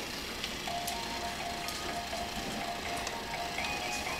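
Simple electronic melody played note by note from a baby bouncer's light-up rainforest toy bar, starting just under a second in, with a few light clicks.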